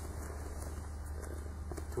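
Steady low hum of room noise, with faint rustling of a gi on mats as a man rolls back onto his back.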